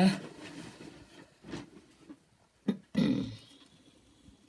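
Hand scoop digging into loose potting compost: a few short rustling scrapes, the loudest about three seconds in, just after a sharp click.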